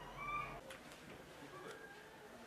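A faint, short animal call with a slight upward bend near the start, followed by two light clicks.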